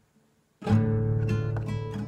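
Acoustic guitar: a chord is struck just over half a second in, followed by a few more strokes, all ringing on and dying away near the end.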